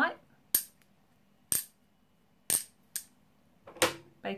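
Lucite plastic bangles knocked together five times, about once a second, each a short, sharp clink. This is the light clink of a non-Bakelite plastic, unlike the dull clunk that real Bakelite gives.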